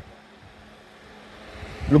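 A pause in a man's speech filled by a faint, steady background hum and hiss; his voice starts again near the end.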